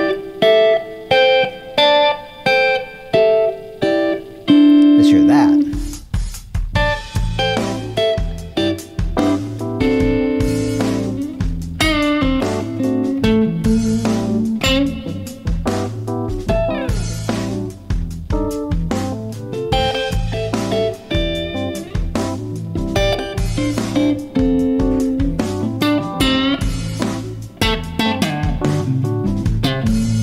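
Fender Stratocaster electric guitar playing three-note chord shapes from the A minor pentatonic scale. It starts with about eight short, separated chords and one held chord. About six seconds in, a blues backing track with a bass line comes in, and the guitar keeps playing chord ideas over it.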